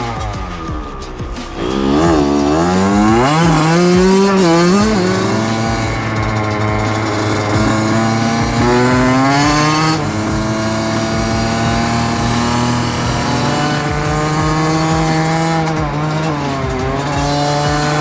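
Two-stroke engine of a Kawasaki KX100 dirt bike, revved up and down several times, then pulling away and riding, its pitch climbing and then dropping around the middle and again near the end.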